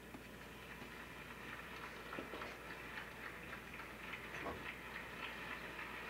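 Faint audience applause: many hands clapping in a steady patter that grows a little louder.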